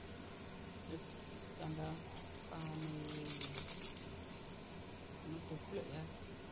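Wire coil whisk stirring a thin starch-and-coconut-milk batter in a ceramic bowl, a rapid run of clicking, scraping strokes about two seconds in that lasts around two seconds.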